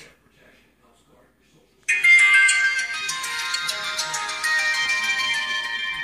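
F2 smartwatch's power-on jingle from its small built-in speaker: about two seconds in, a bright, ringtone-like melody of several tones starts suddenly and rings on, slowly fading, as the watch boots up.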